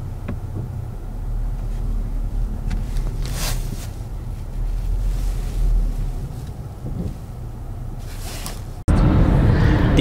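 Low, steady rumble of a VW Tiguan moving slowly, heard from inside the cabin, with a few faint light clicks. About nine seconds in it cuts abruptly to louder driving noise.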